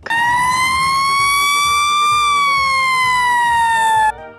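Fire engine siren wailing: one slow rise in pitch over about two seconds, then a slow fall, cut off abruptly at the end.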